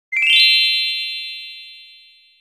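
A bright chime sound effect: a fast run of rising bell-like notes a moment in, ringing on together and slowly fading away.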